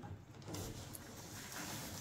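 Hand-cranked window regulator of a 1957 Ford Fairlane convertible, the rear side window glass winding down in its channel: a faint, steady mechanical sliding sound with a few light clicks.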